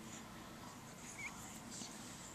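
Faint sounds of a young baby: soft breathing, with a brief tiny squeak about a second in.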